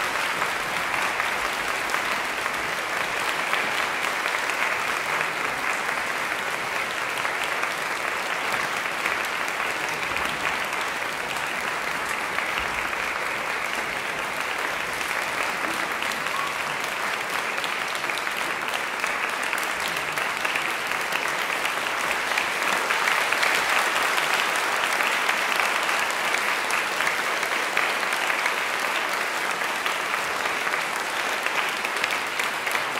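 Audience applauding steadily in a concert hall, growing slightly louder a little past two-thirds of the way through.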